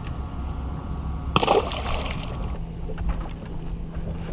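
A small spotted bass released back into the lake with a single splash about a second and a half in.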